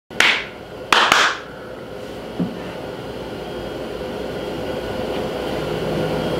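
A man's hand claps: one clap, then two quick claps close together about a second in. After them comes a steady low hum that slowly grows a little louder.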